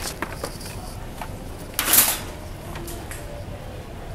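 Light clicks and rattles of shopping-cart and merchandise handling in a store aisle, with one short, loud rustling scrape about two seconds in.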